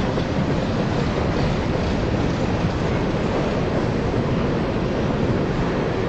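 Freight cars of a mixed freight train rolling past, a steady rumble of steel wheels on rail.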